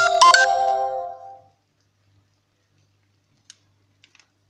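A short electronic chime tune of a few stepped notes, like a phone ringtone, ringing out and fading over about a second and a half. A faint click follows near the end.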